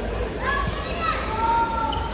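Voices shouting and calling out in a badminton hall during a doubles rally, with a drawn-out call starting about a second in, over the steady murmur of spectators.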